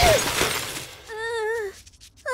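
Cartoon crash and breaking sound effect of a pile of things tumbling down, dying away over the first second. About a second in comes a short wavering cry that falls in pitch.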